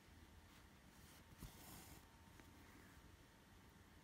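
Near silence: faint rustle of a needle and embroidery thread drawn through cross-stitch fabric, with a soft bump and a brief hiss about one and a half seconds in.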